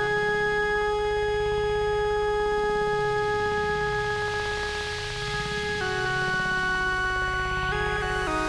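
Synthesizer music: a sustained synth chord held over a slowly pulsing bass, moving to a new chord about six seconds in and again near the end. A hiss of noise swells and fades in the middle.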